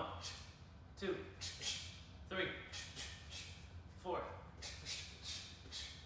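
Short, sharp breaths forced out with each punch while shadowboxing in boxing gloves, one every half second to a second, over a steady low hum.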